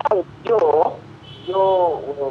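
Speech only: a voice talking in short phrases, heard over a phone held out on speaker.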